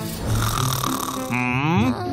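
Cartoon snoring from a sleeping character: a rasping in-breath, then a rising, whistling out-breath near the end, over background music.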